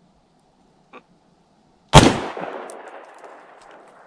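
A single shot from an AR-15 rifle in 5.56 mm, a sharp crack about two seconds in with an echoing tail that dies away over the next two seconds. A faint click comes about a second before the shot.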